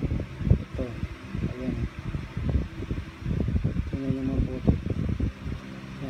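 A person talking in short stretches over an uneven low rumble of moving air buffeting the microphone.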